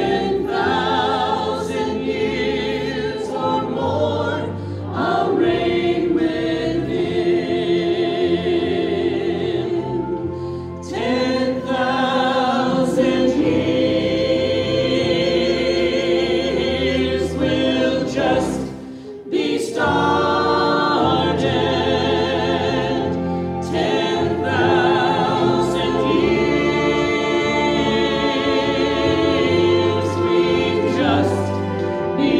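Choir singing with instrumental accompaniment. The voices hold long, wavering notes over sustained low chords, with short breaks between phrases about a third of the way in and again just past halfway.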